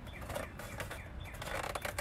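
Styrofoam egg carton being handled and turned in the hands: faint scattered clicks and creaks.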